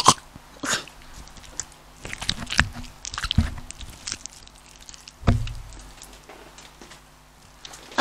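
Homemade slime being squished and pulled by hand, giving scattered short sticky clicks and crackles. A low thump about five seconds in, the loudest sound.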